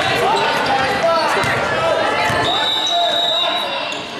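Basketball being bounced on a gym floor by a player at the free-throw line, with voices echoing in a large gym.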